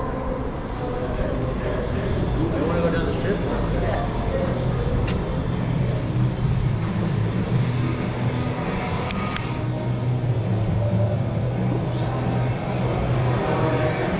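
Busy hotel entrance and lobby ambience: a steady low hum under indistinct voices, with faint background music.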